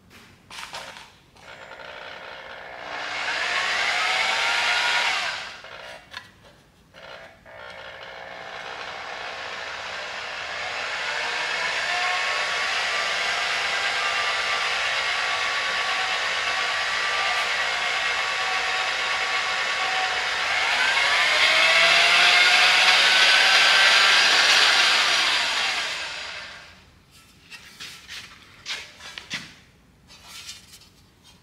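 Half-inch electric drill driving a bead roller, its motor whine speeding up and slowing down as a sheet-metal panel is rolled through the dies. There is a short run a few seconds in, then a longer run from about eight seconds in until near the end, loudest in its last few seconds.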